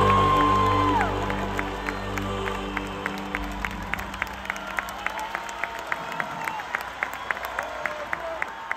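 A live band's final chord ringing out and fading over the first three seconds, with a long held high note at the start. Then the concert crowd claps in a steady rhythm, about three claps a second, with a few whistles.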